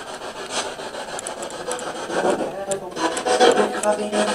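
Spirit box sweeping through radio stations: rasping static broken by clicks and choppy fragments of voices, which the investigators hear as a man saying "I don't have em... something's coming".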